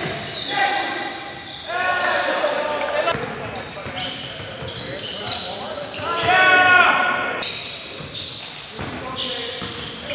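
Basketball game sounds in a large gym: a ball bouncing on the court and players shouting to each other, echoing off the hard walls, loudest about six to seven seconds in.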